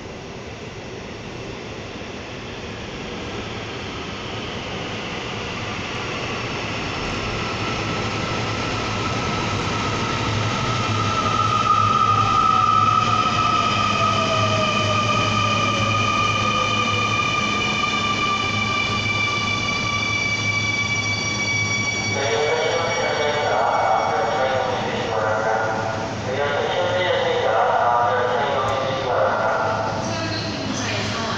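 Seoul Line 2 subway train coming into the station, growing louder. Its electric motor whine falls slowly in pitch as it brakes. About two-thirds of the way in, a voice announcement starts over the train's running noise.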